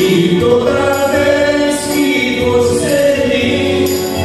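Live keyboard music with long held notes and choir-like voices.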